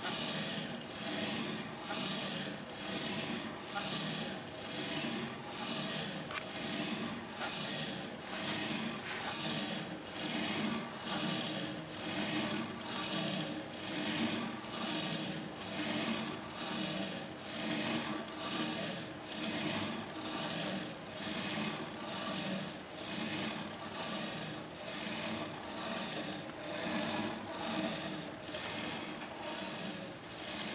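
Pen scratching across paper as the harmonograph's swinging table carries it round in loops, swelling and fading in an even rhythm about once a second with each pass of the pendulum.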